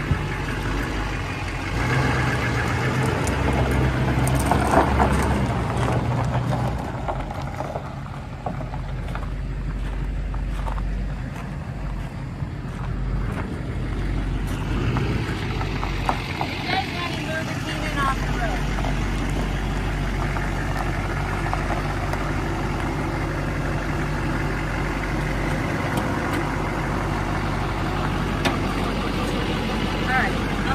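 Chevrolet Express G3500's 6.6-litre Duramax V8 turbo-diesel running, louder for the first several seconds and then idling steadily.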